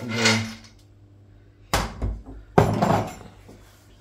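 Two sharp clatters of kitchenware being handled on a counter, about a second apart, after a voice trails off.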